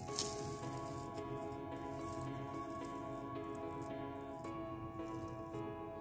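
Soft background music with held chords that change about two-thirds of the way through. Under it, a faint crumbly crackle of burnt, charred insulation being rubbed off a bundle of copper armature-winding wires.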